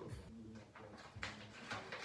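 Quiet handling of a hair dye box's paper instruction leaflet: a few faint rustles and soft clicks, with a short low hum twice.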